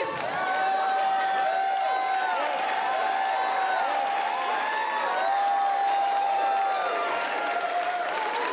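Theater audience cheering and applauding, many voices whooping over steady clapping.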